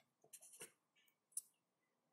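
Faint strokes of a felt-tip marker writing figures on paper: a few short scratches near the start and one small sharp tick about one and a half seconds in, otherwise near silence.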